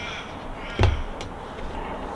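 A camera set down on a wooden tabletop: one solid knock about a second in, followed by a light click.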